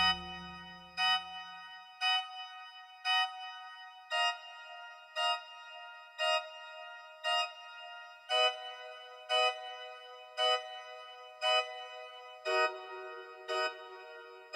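Johannus Live 2T virtual pipe organ, sounding samples of the 1750 Gottfried Silbermann organ of the Dresden Hofkirche, playing short detached chords in the treble about once a second. The chords come in groups of four repeats, each group a step lower than the last. A low full-organ chord dies away in the church's reverberation over the first two seconds.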